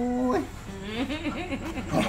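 Dog whining in a quick run of short rising-and-falling whimpers while held on a lap, restless and wanting to get down.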